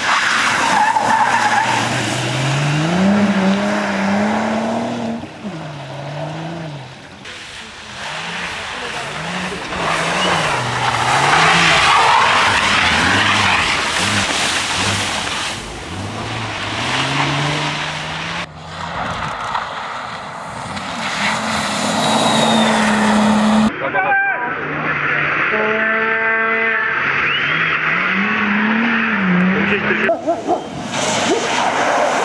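Rally car engine revving up and down through gear changes, with tyres sliding and skidding on snowy, icy tarmac as the car corners, heard across several cut shots.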